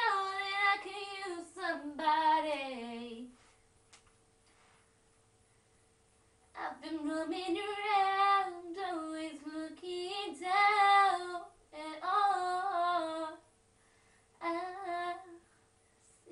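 A teenage girl singing solo, unaccompanied. One phrase falls in pitch and ends about 3 seconds in. After a pause of about three seconds she sings again in several phrases with short breaks.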